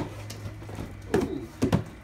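Cardboard boxes being handled on a wooden table, with two short thumps, one just over a second in and one near the end.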